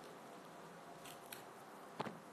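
Faint tearing and crackling of tangerine peel being pulled off by hand, with a couple of soft clicks about a second in.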